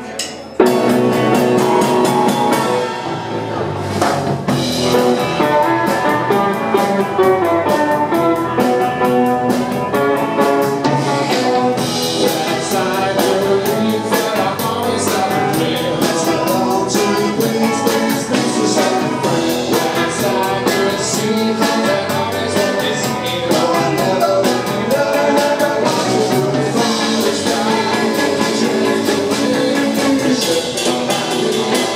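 Live band playing a song with electric guitars, drums and keyboard. The full band comes in at once about half a second in, after a brief pause, and keeps a steady groove.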